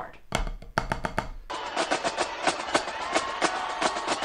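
A few stick strokes on a rubber drum practice pad, then, about a second and a half in, a recording of a marching drumline's snare battle cadence takes over: fast, dense drumming with sharp accents.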